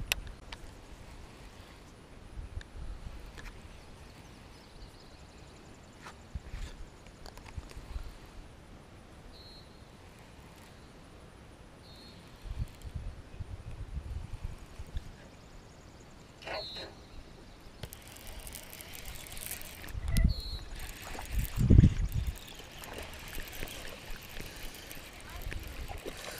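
Faint handling noise of a baitcasting rod and reel, with scattered soft knocks and a few short clicks. About two-thirds of the way through comes a louder stretch of hissing, splashing noise with a couple of thumps.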